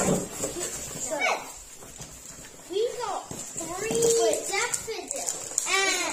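Children's excited voices, with wordless exclamations and one call rising sharply in pitch near the end. Cardboard box flaps rustle at the start as the parcel is opened.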